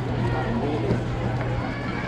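Indistinct chatter of spectators and players: several voices overlapping, none clear enough to make out words, over a steady low hum.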